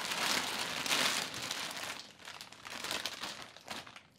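Clear plastic bag crinkling as it is handled, a dense crackling for about two seconds that then thins into scattered crackles and fades.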